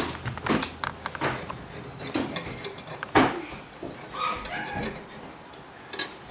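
Thin metal knife scraping and clicking against the sides of a metal muffin tin as it loosens baked muffins from the cups, with one sharper knock about three seconds in.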